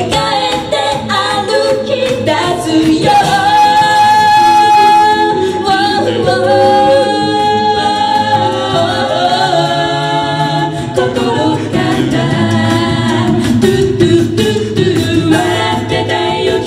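Six-voice mixed a cappella group singing live into microphones, men's and women's voices in close harmony with some long held chords, over a steady percussive beat.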